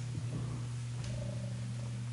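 Steady low electrical hum, typical of mains hum picked up by a sound system, with a few faint knocks.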